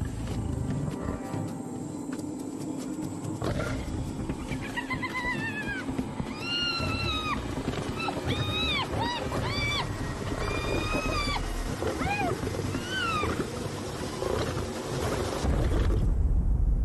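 Lions growling low under a long run of high-pitched spotted hyena calls, each rising and falling in pitch, starting about four seconds in and carrying on for some ten seconds, as a lion chases a hyena off.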